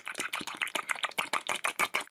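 Rapid, irregular clicking, more than ten clicks a second, that stops suddenly at the end.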